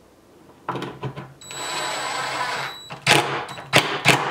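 DeWalt cordless drill running for about a second and a half, its motor whining steadily as the bit bores a pilot hole into rough-sawn lumber. Several loud knocks follow near the end.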